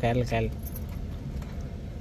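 Steady low rumble of a car heard from inside its cabin, after one short spoken word, with a few faint high clinks shortly after the word.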